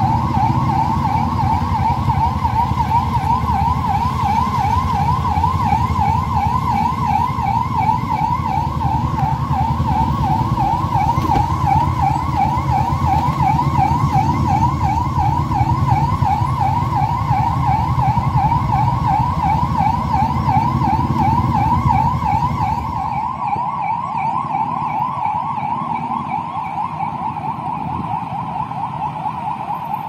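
Police siren in a fast, repeating yelp over the rumble of several police motorcycles riding slowly in a group. About three-quarters of the way through the engine rumble drops away and the siren carries on with a steadier tone.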